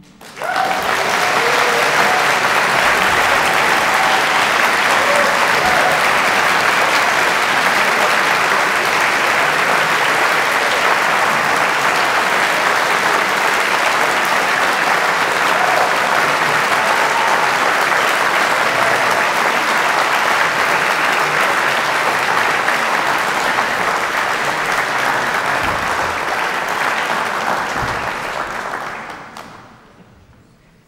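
Audience applauding: the clapping breaks out about half a second in, holds steady, and dies away near the end.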